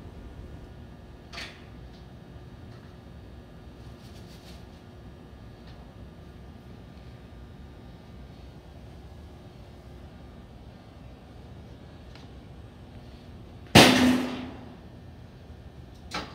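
Steady low workshop hum with a few faint knocks and hisses as a hood panel is being handled and cleaned, then one loud sudden burst near the end that fades over about a second.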